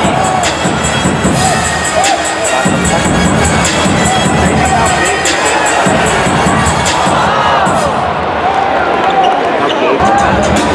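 Arena crowd at a live NBA basketball game, cheering and shouting over loud arena music with a steady beat. The shouting swells about seven seconds in.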